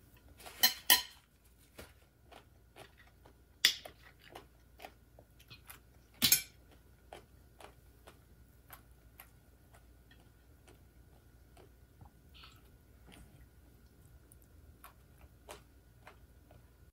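Close-up eating sounds: wet chewing of spicy papaya salad with many small clicks, and a spoon and fork clinking and scraping on a ceramic plate. The loudest clinks come about a second in, near four seconds and about six seconds in.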